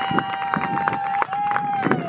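A spectator's long, high, sustained cheering yell held on one pitch, broken once about halfway and sliding down as it trails off at the end, over scattered sharp clicks.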